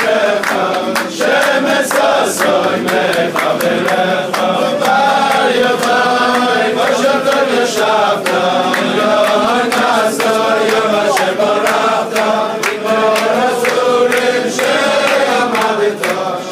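A crowd of men singing a Hebrew song together in unison, loud and steady, with frequent short sharp hits mixed in.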